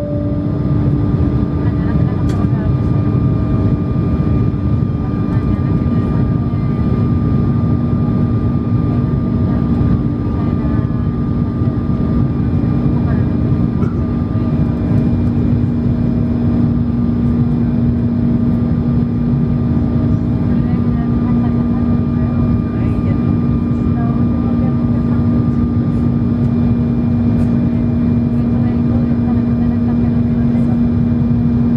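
Jet airliner cabin noise heard over the wing: a steady rush of engines and airflow with a steady hum that drops slightly in pitch about ten seconds in.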